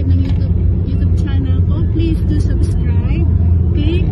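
Steady low rumble of a car's cabin, with a woman talking over it.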